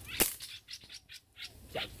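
A slingshot fired once with a single sharp snap about a quarter second in, followed by a few short, high bird chirps from the bamboo.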